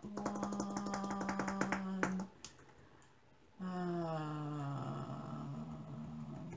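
A woman hums a held note while rapid plastic clicking sounds as she searches through a case of small diamond-painting drill bottles. After a short pause she hums again, a long note slowly falling in pitch.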